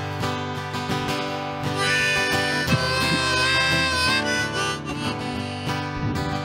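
Harmonica in a neck rack played over a strummed acoustic guitar: the instrumental intro of a country song, with a long held harmonica note in the middle.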